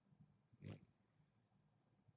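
Hummingbird leaving a nectar feeder: a faint, short burst of sound as it takes off, then a rapid series of about nine high, thin chip notes at roughly ten a second.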